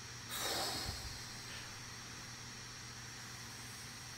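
A person's short exhale into a microphone, about half a second long just after the start, before a pause with only faint line hiss.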